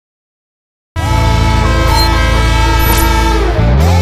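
A TV show's opening theme bursts in suddenly about a second in: a loud held chord of horn-like tones, as of a train-horn sound effect over music, with a rising pitch glide near the end.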